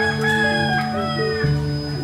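A rooster crowing once, a call of a little over a second that rises and falls, over steady background music.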